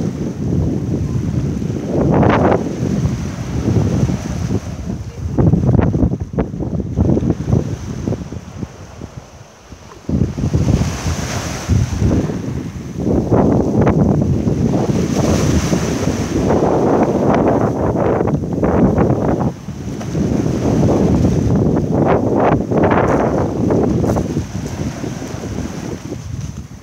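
Small sea waves washing up and draining back over a sand and pebble beach, the rush swelling and fading every few seconds with a lull about eight to ten seconds in. Wind buffeting the microphone adds a low rumble throughout.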